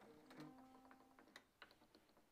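Faint, irregular clicking of a string winder turning Grover tuners as the guitar strings are slackened off. The loosened strings ring faintly and die away in the first second or so.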